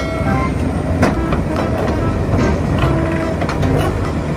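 Large crawler crane's diesel engine running with a steady low rumble and a few faint knocks.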